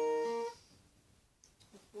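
Steel-string acoustic guitar fingerpicked: two strings plucked together, then another lower note a moment later, ringing for about half a second before being cut off.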